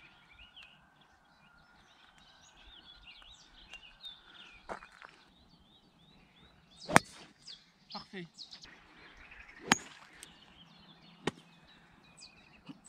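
Birds chirping and singing, with the sharp click of a golf club striking a ball off the tee about seven seconds in, the loudest sound. Two fainter sharp clicks follow a few seconds later.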